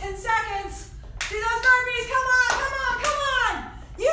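A woman's voice, with several sharp smacks among it.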